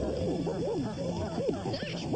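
Cartoon character voices, several at once, making quick rising-and-falling animal-like cries.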